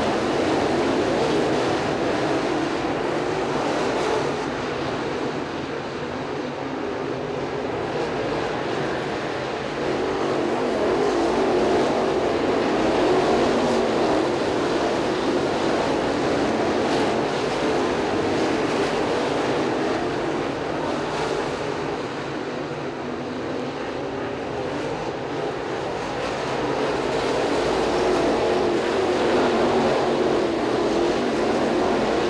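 Dirt crate late model race cars at speed, their crate V8 engines running hard in a steady drone that swells and fades as the pack goes around the track, louder about a dozen seconds in and again near the end.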